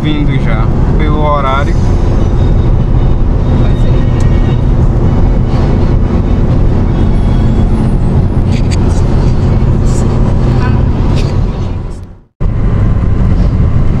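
Steady engine and road noise heard inside the cabin of a Ford Focus 2.0 driving along a highway: a continuous low drone with a faint engine hum. The sound cuts out abruptly for a moment about twelve seconds in, then resumes.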